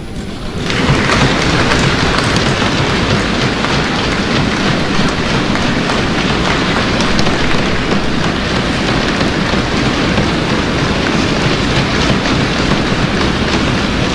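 A large audience applauding loudly and steadily, starting just under a second in.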